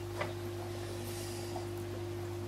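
Steady low hum from an aquarium air pump driving the sponge filters, with one faint click just after the start.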